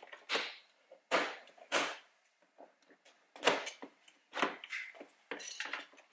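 Plastic trim clips snapping loose as a door's window-switch panel is pried out with a plastic pry tool: a series of sharp, irregularly spaced clicks and snaps, several close together near the end.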